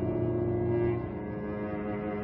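Cello played with the bow in a slow classical piece, holding long low notes. A louder note sounds at the start and is held for about a second before the line goes on more softly.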